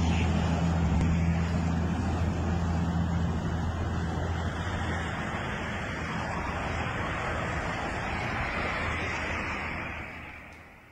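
Steady rushing road-traffic noise picked up on a phone microphone, with a low engine hum that is strongest in the first half and fades about halfway through.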